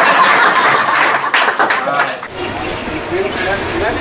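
A group clapping and cheering, with voices over it. A little over two seconds in it cuts off and gives way to a low rumble with chatter inside a metro train car.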